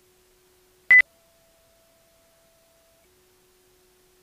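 A single short, sharp electronic beep, over a very faint steady tone that steps up in pitch just after the beep and drops back down about two seconds later.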